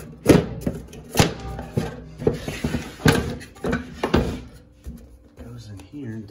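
A hollow plastic fluid tank being handled in a fog machine's housing: a string of sharp knocks and clunks, about seven in all, with a brief scraping rustle in the middle.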